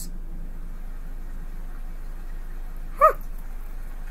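A steady low hum of room tone, then a woman's short exclamation, "huh," about three seconds in.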